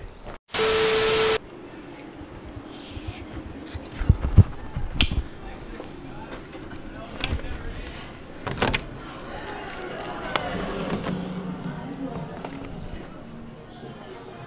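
A short loud burst of hiss with a steady tone about half a second in, then handheld footsteps and rustling with scattered clicks and knocks as a lever-handle bedroom door is opened, the sharpest knock a little after halfway.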